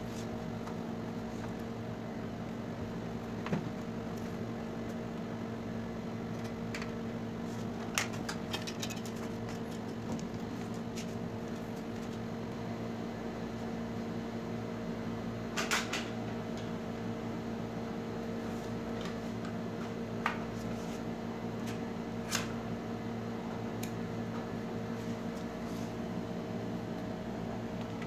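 A steady machine hum, like a fan or other room appliance running, with a few light clicks and taps scattered through, as of parts being handled.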